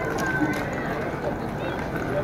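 Indistinct chatter of several people at a distance, no words clear, over a steady low background rumble.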